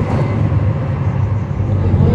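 Cummins ISL9 diesel engine of a 2011 NABI 40-SFW transit bus running, heard from inside the bus as a steady low drone.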